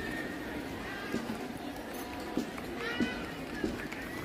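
Outdoor background of people's voices, with several short scattered knocks about a second or so apart; no band music is playing.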